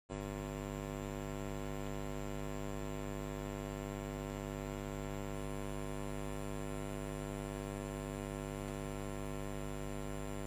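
Steady electrical mains hum: an unchanging low buzz with a long run of overtones, typical of a ground loop or interference in the audio feed.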